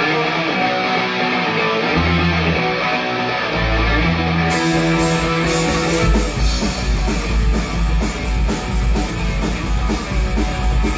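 Live punk rock band playing: electric guitars ring out sustained notes as an intro, then the drum kit and full band crash in about four and a half seconds in with a fast, steady beat.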